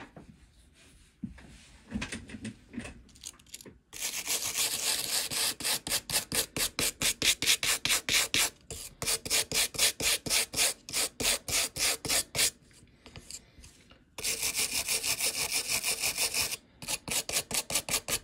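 Soft-bristled brass brush scrubbing a wet amplifier eyelet board in quick back-and-forth strokes, about four or five a second, lifting off grime and flux that turn conductive over time. Quiet for the first few seconds, then steady scrubbing with a short break about two-thirds of the way through.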